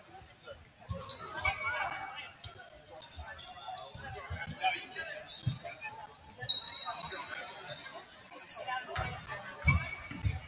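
Sneakers squeaking on a hardwood gym floor again and again in short chirps, with low thuds and voices echoing in a large hall; the heaviest thuds come near the end.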